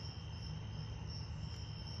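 Night insects calling in a steady, high-pitched chorus.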